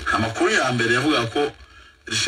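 Speech only: a person talking, who stops about one and a half seconds in.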